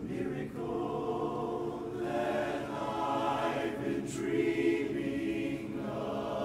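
Men's barbershop chorus singing a cappella in close four-part harmony, holding sustained chords that swell about two seconds in.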